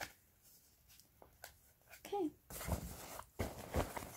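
Things being handled in a fabric backpack. After a quiet start with a few light clicks, rustling and handling noise with a couple of soft thumps begins a little past halfway.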